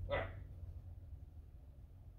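A man says one short word near the start, then quiet room tone with a low steady hum.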